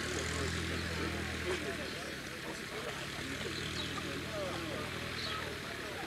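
A propeller aircraft's engine running steadily, a low hum that fades shortly before the end, with people chatting in the background.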